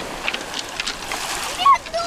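Small waves washing in over a pebble beach, with water splashing among the stones and a few sharp clicks. A short voice sound comes in about a second and a half in.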